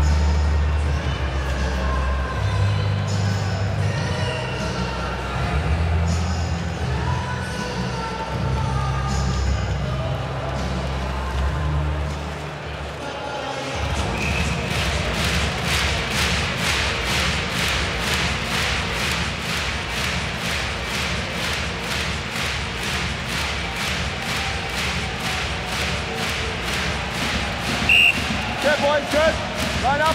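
Arena music with a bass line over crowd noise in a hockey rink. About halfway through it gives way to a fast, even beat of sharp strokes over the crowd.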